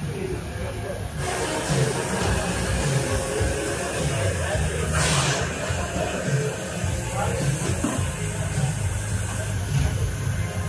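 Pit-garage ambience: indistinct crew voices and background noise, with a short burst of hiss about five seconds in.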